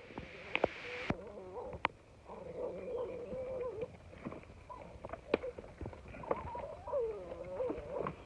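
Patterdale terrier pup whining in long, wavering drawn-out tones while working a brush pile after quarry, with sharp snaps and cracks of dry sticks scattered through it.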